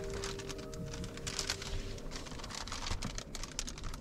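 Crinkling and small crackles of a reflective window cover being handled and fitted against the car's windows, in dense irregular clicks. Soft background music with a held note fades out about halfway through.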